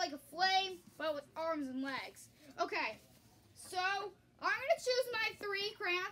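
Only speech: a child talking in short phrases with brief pauses.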